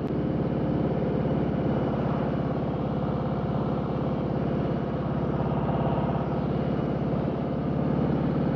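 Harley-Davidson Road King Special's V-twin engine running steadily at cruising speed, heard over wind and road noise.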